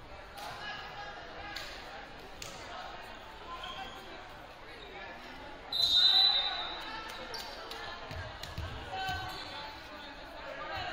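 Indoor volleyball match: a referee's whistle gives one short, high blast about six seconds in, the loudest sound, the signal for the serve. Before and after it, voices murmur and echo around the hall, and a few sharp knocks follow as the ball is struck.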